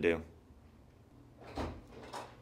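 A wooden classroom door being opened, one short sound about one and a half seconds in.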